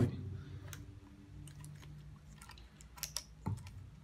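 Small plastic clicks and taps from handling and working apart an electric shower's plastic valve and boiler housing, with a sharp knock at the very start and a small cluster of clicks about three seconds in.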